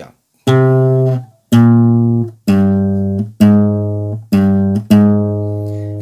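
Classical guitar playing six single bass notes plucked with the thumb, about one a second, each ringing and fading. This is the bass line of the C minor intro played alone, without the fingerpicked upper strings.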